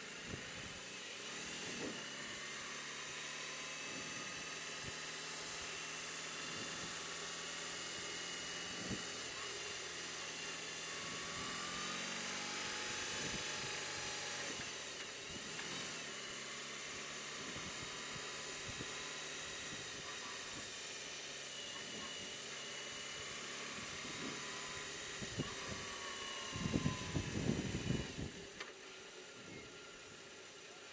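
BMW R18 Transcontinental's big boxer-twin engine running under way, with a steady high whine over its low hum. The pitch of the engine shifts a few times, and the sound grows briefly louder and rougher near the end.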